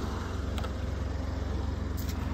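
Ford Fiesta 1.0 EcoBoost three-cylinder petrol engine idling steadily while it warms up from cold, with a light click about half a second in.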